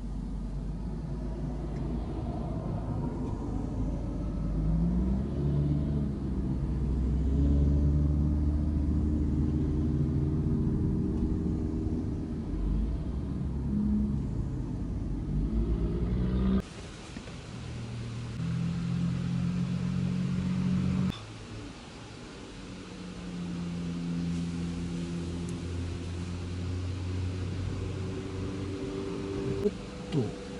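Cars driving past one after another, lowered minivans among them, their engine notes rising and falling as they come up the road and pull away. The sound changes suddenly twice partway through, then a steadier engine note holds.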